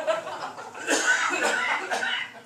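Indistinct voices chuckling and talking among a small group, with a short cough about a second in.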